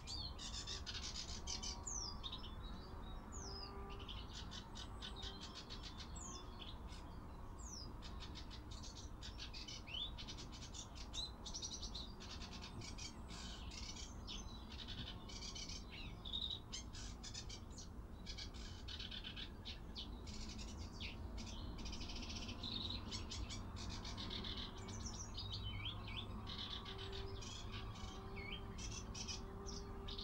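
Wild birds chirping and calling throughout, in many short notes, quick runs of notes and fast falling whistles, over a steady low rumble.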